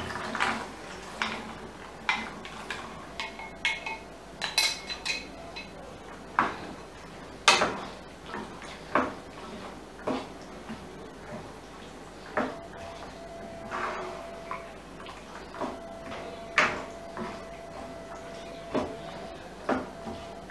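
A wooden spatula stirring white peas into thick masala in a non-stick frying pan, with irregular knocks and scrapes against the pan, the sharpest about seven and a half seconds in.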